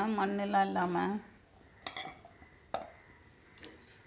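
A few sharp metallic clinks against a stainless steel pot of baby potatoes in water, spread over the second half, as the potatoes are stirred.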